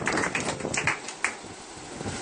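Scattered hand claps from a few listeners, irregular and sharp, dying away after about a second.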